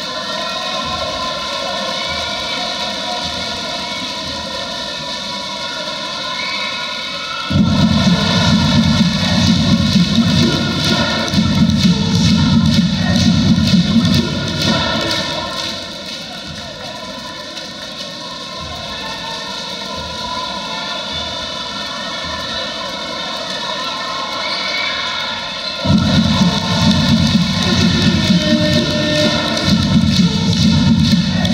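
Basketball arena crowd noise: a dense, steady roar of many voices that jumps louder about a quarter of the way in, drops back about halfway through, and swells again near the end.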